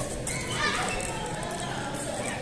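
Children's voices and chatter in the background of a busy sports hall.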